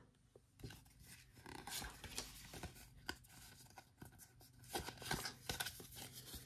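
Faint rustling and light clicks of Pokémon trading cards being handled and slid against one another, a little busier about five seconds in.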